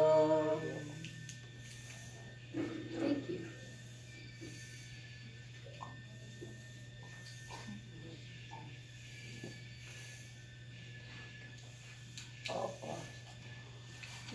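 A woman's unaccompanied sung note ends in the first second. It is followed by a quiet room with a steady low hum and a few faint short sounds, one around three seconds in and another near the end.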